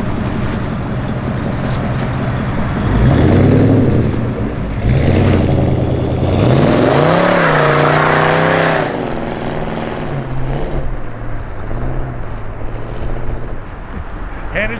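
Fuel-injected GM Ram Jet 350 V8 of a 1950 Ford Custom through its stainless dual exhaust and Smitty's mufflers: idling, two short throttle blips about three and five seconds in, then a long hard rev as the car accelerates away about six seconds in, settling to a steady run that fades as it drives off.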